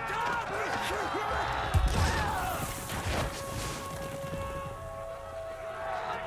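Film battle soundtrack: men shouting and yelling in close combat, with a heavy impact a little under two seconds in, over a musical score whose held notes come forward in the second half.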